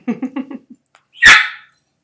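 A pet dog barks once, loud and sharp, a little over a second in, after a quick run of short pitched sounds at the start.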